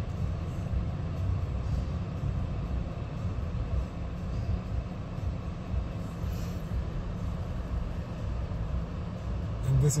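Low, steady rumble of an Xpeng G6 electric car's cabin as the car slowly steers itself into a parking bay.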